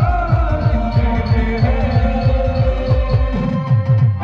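Live band music with a big bass drum beating fast and heavy, about five to six beats a second, under a sustained, bending melody line. The melody and upper instruments break off for a moment right at the end.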